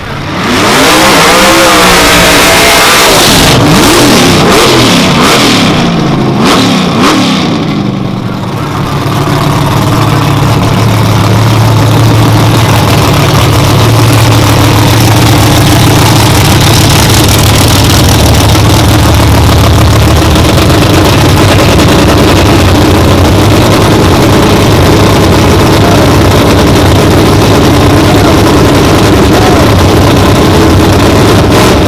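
A drag-race car's engine is revved in repeated rising and falling blips for about the first eight seconds. It then runs steadily and loudly.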